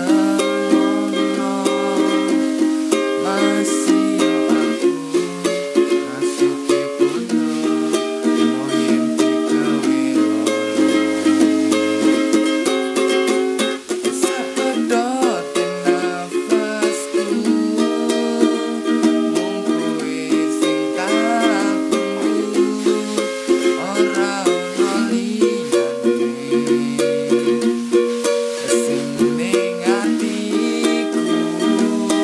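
Four-string ukulele strummed steadily in a rhythmic pattern, moving through a chord progression of C, Em, F, G, Am and Dm.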